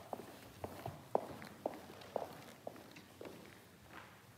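Footsteps of shoes on a hard floor at an even walking pace, about two steps a second, with some echo from a large hall.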